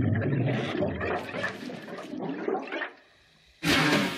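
A long, rough fart that runs for about three seconds and then stops, with no tone to it.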